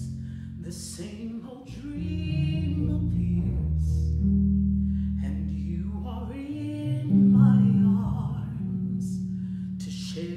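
A woman sings a slow ballad, accompanied only by an electric bass guitar holding long low notes.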